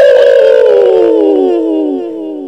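A cartoon sound effect: one long pitched tone with a slight wobble, sliding slowly down in pitch and fading near the end.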